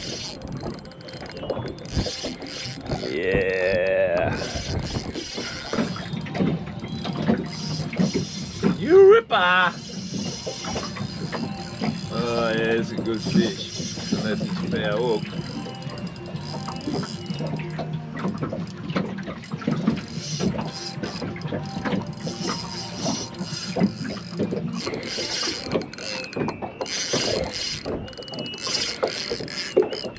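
Spinning reel being cranked against a hooked mulloway, its gears turning with a ratcheting clicking.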